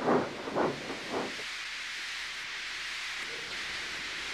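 Steam locomotive letting off steam from its cylinders: a steady hiss that settles in about a second and a half in.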